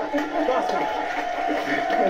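Several voices cheering and calling out over one another, with one long held call running through most of it.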